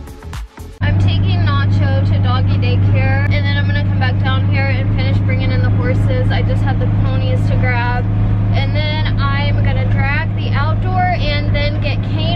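A vehicle's engine running steadily, heard from inside its enclosed cab as a loud, even low drone that starts abruptly about a second in. A woman's voice talks over it, and background music plays briefly before the drone begins.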